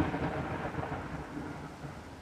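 Rumbling thunder sound effect that fades steadily away.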